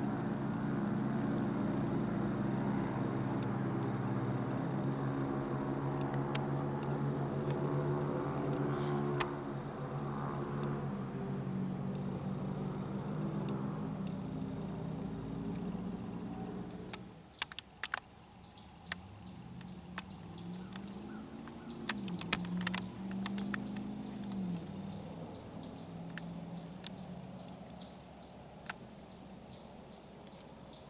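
An engine running steadily at one pitch, cutting off suddenly about seventeen seconds in. After that comes a fainter drone that rises and falls in pitch, with scattered sharp clicks and short high chirps.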